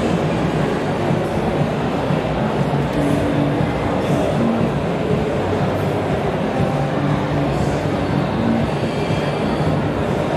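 Electric hair clipper running as it cuts hair, with music in the background.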